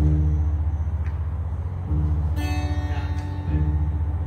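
Upright bass plucked, sounding three deep notes of about the same pitch a couple of seconds apart. An acoustic guitar is strummed once about halfway through.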